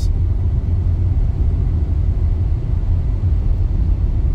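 Steady low road and tyre rumble inside a Tesla's cabin while the car cruises under Autopilot, with no engine note.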